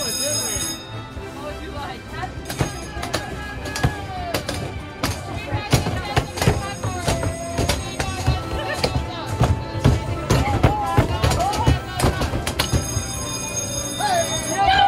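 Padded mallets banging on Whac-A-Mole arcade game machines: many quick, irregular thuds from about two seconds in, over the game's music and voices.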